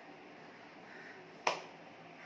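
A single sharp click of hands striking together, about one and a half seconds in, over faint steady room hiss.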